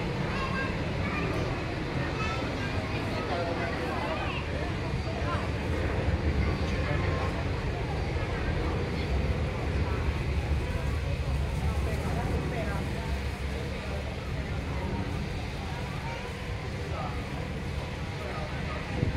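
Indistinct background chatter of people over a steady low rumble.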